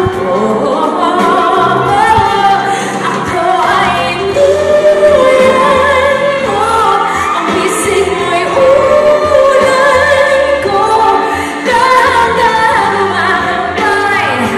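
A woman singing a pop ballad live into a handheld microphone over instrumental accompaniment with a bass line, holding long notes about four seconds in and again about eight seconds in.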